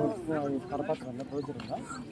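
Men's voices talking and calling out near the bulls, with no clear words.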